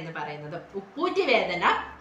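A woman speaking Malayalam in a steady, explanatory talking voice.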